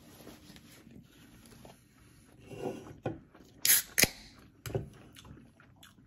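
Eating sounds of people chewing pizza close to the microphone. About three and a half seconds in there is a short, loud rustle or smack, followed by a couple of sharp clicks.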